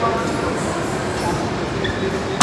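Steady gym room noise with indistinct background voices and no distinct impacts.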